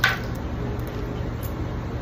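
Steady low hum of running machinery, with one sharp click right at the start as a metal grooming comb is picked up off the table.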